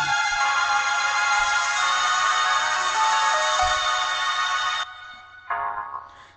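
Instrumental backing music: bright, sustained electronic keyboard chords ringing high, with no voice. The music breaks off about five seconds in, and a short soft phrase follows near the end.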